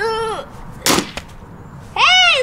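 A short shout, then about a second in a single sharp crack of a sledgehammer striking a carbon-fibre F1 racing helmet, a blow that does some damage to the shell.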